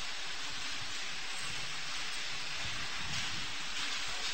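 Steady hiss of background noise, with no voice and no distinct events.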